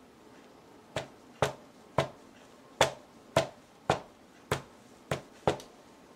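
A mallet striking a paint-covered canvas panel on a table: about nine sharp taps, roughly two a second.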